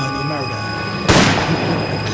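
A single gunshot sound effect about a second in, sudden and loud, in a hip-hop track over its steady bass line and voices.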